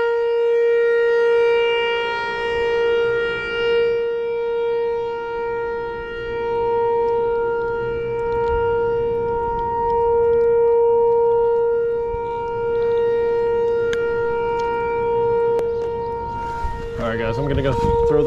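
A steady, unwavering tone with a row of overtones, like a held horn note, running all the way through: a fault on the recording that the angler calls insane. A few faint clicks come near the end, and a voice begins under the tone just before it ends.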